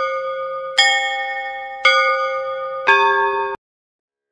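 Bells struck in a slow series, about one strike a second, each ringing on until the next; the last strike is lower in pitch, and the ringing cuts off suddenly about three and a half seconds in.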